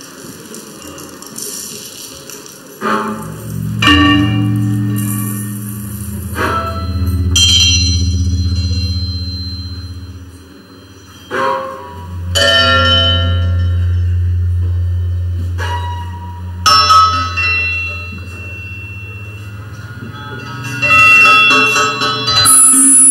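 Live double bass processed in real time through Kyma, producing struck, bell-like metallic tones that ring out over a sustained low drone. The struck tones come irregularly every few seconds, some in close pairs.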